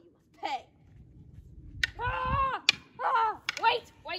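Girls shouting and crying out in a play fight with sticks, one long held yell about halfway through, with a few sharp clacks of wooden sticks striking.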